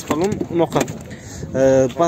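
A man talking, with a few short clicks of the boot floor cover being handled about a third of the way in.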